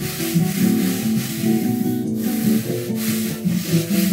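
Background music, with a dry, rasping rub of wood being worked by hand: a small hand plane and a palm passing over a thin wooden instrument top strewn with shavings. The rubbing breaks off briefly about halfway through.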